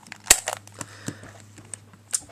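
ShengShou 3x3 plastic speedcube turned by hand, its layers clicking as they move: one sharp click about a third of a second in, then a run of lighter clicks. The cube is being turned while testing its reverse corner cutting.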